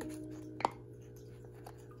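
A short plastic click about half a second in as a hand works the lid of a plastic fish-flake jar, with a fainter tick later, over a low steady hum.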